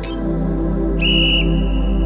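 Interval timer's whistle: one short, steady, high-pitched blast about a second in, trailing off afterwards, signalling the start of a work interval, over background music.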